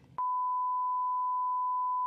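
A steady 1 kHz test-tone beep, the reference tone that goes with TV colour bars and a "please stand by" card. It starts a moment in and holds one unchanging pitch for about two seconds.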